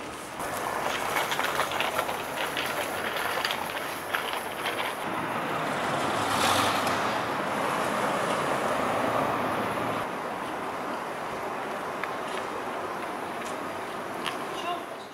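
Street ambience with traffic noise, swelling as a vehicle passes about six seconds in and then fading back.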